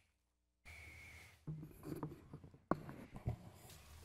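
Papers rustling, with small scattered clicks and knocks on a desk, picked up by the room microphones. The sound cuts out completely for about half a second at the start.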